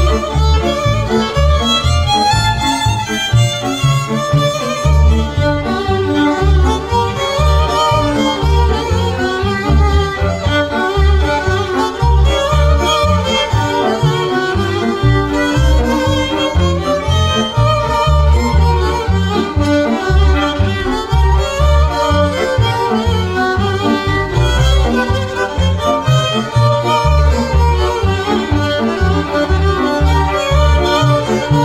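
Traditional Beskid highland folk string music: fiddles playing a dance tune over a regular pulsing bowed bass, with no singing.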